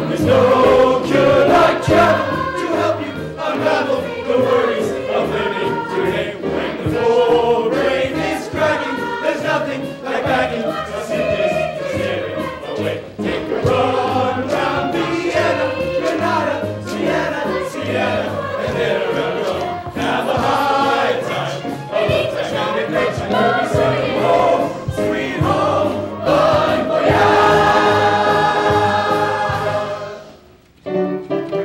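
A stage musical's ensemble cast singing a chorus number with instrumental accompaniment, ending on a long held final chord near the end.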